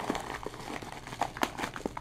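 Paper mailing envelope crinkling and crumpling as hands pull it open and unwrap it, with irregular crackles and sharp ticks.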